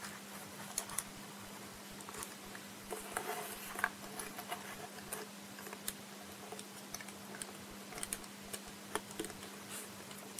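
Faint, scattered clicks and taps of small plastic model-kit parts being handled and fitted together.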